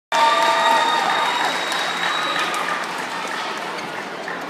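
Audience applauding, loudest at the start and slowly dying away.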